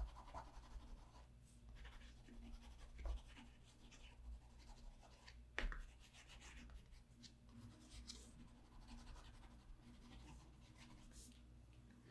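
Faint scratching of a Caran d'Ache Neocolor II water-soluble wax pastel stroked back and forth across paper, with one sharper tick a little before halfway.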